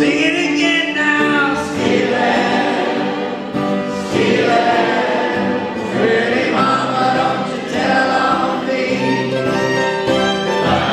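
Live acoustic jug-band music: acoustic guitars strummed and fiddles bowed while a crowd of voices sings along with the lead singer.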